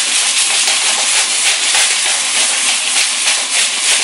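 Hand-twisted salt grinder grinding pink Himalayan salt crystals over a cooking pot: a continuous gritty grinding, with a steady hiss from the pot on the stove beneath it.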